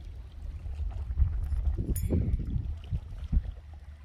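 Wind buffeting the microphone: a low, uneven rumble that swells about a second in.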